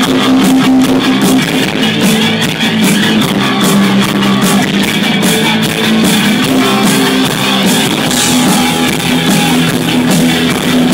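Live rock band playing loudly: electric guitars, keyboard and a drum kit keeping a steady beat, with no vocals.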